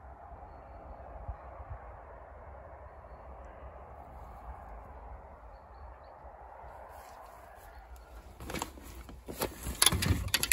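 Car running and moving slowly along a waterlogged, muddy dirt track, a steady engine and tyre noise. Near the end, a run of sharp knocks and clatter as gear is handled.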